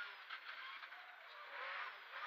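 Engine of a Škoda 130 LR rally car, a rear-mounted four-cylinder, heard from inside the cabin under tyre and road noise. It runs lighter through the middle of the moment, then revs up again near the end.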